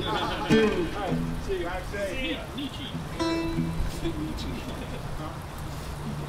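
Acoustic guitar being picked lightly, with one ringing note a little past the middle, over people talking.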